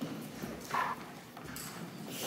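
A few soft knocks, about a second apart.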